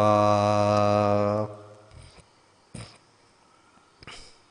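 A man's chanting voice holding the last syllable of a Buddhist blessing on one steady pitch for about a second and a half, then stopping, leaving a quiet room with one brief soft noise midway.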